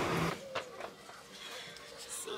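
Steady car cabin noise that cuts off abruptly a moment in, followed by a few faint clicks and rustles.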